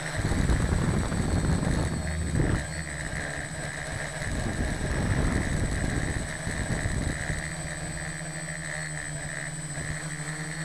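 Small quadcopter's electric motors and propellers whirring steadily, heard close up from the craft itself. Gusts of rushing air noise swell over the first couple of seconds and again midway.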